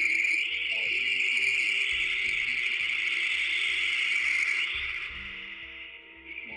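Steady high-pitched static-like hiss with a faint low hum beneath it, part of an analog horror video's sound design. It fades down about five seconds in.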